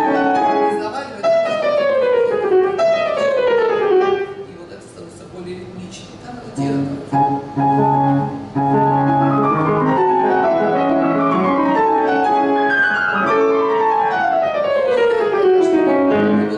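Kawai grand piano played at speed, with fast descending runs over bass notes. The playing thins out about four seconds in, then resumes with bass chords and more descending runs.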